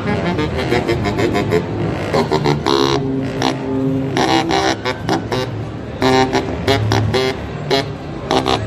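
Eastman baritone saxophone being played, a run of short separate notes with a few held longer ones, in a low, buzzy reed tone.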